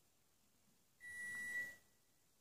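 A single steady, high-pitched electronic beep starting about a second in and lasting just under a second, against quiet room tone.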